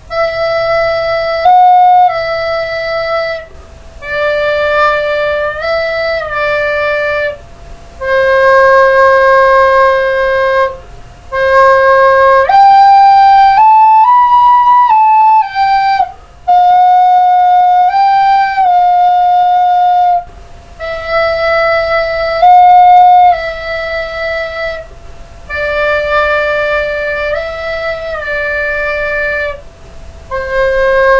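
Yamaha plastic recorder played by a beginner: a slow, simple self-made tune of held single notes in short phrases with brief breaks between them, climbing to its highest notes about halfway through.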